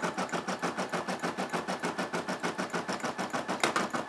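Brother SE600 embroidery machine stitching, its needle running in a fast, even rhythm of strokes.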